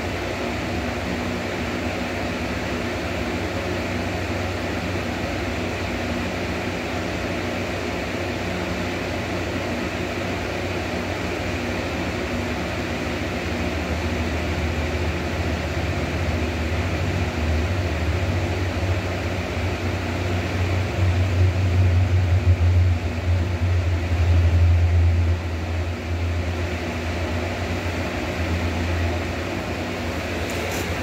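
Steady machine-like hum and hiss, with a low rumble that builds through the middle, is loudest a little past two-thirds of the way in, then eases off near the end.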